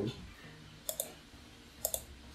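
Two computer mouse clicks about a second apart, each a quick double tick of button press and release.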